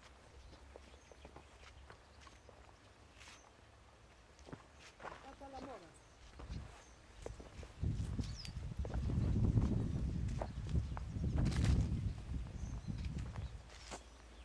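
Low rumbling noise on a handheld camcorder's microphone as the camera is moved about, loud from about eight seconds in until near the end, with scattered clicks; before it, quiet outdoor background with a brief faint call.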